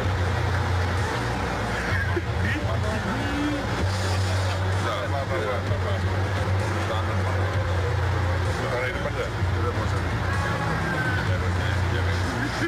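Outdoor street ambience: a low, steady rumble of vehicle engines that drops away briefly a few times, under indistinct voices of people close by.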